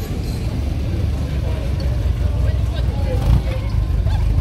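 Engine of a classic Triumph TR roadster running at low speed as it creeps past in slow traffic: a low, steady rumble, with a crowd chatting faintly.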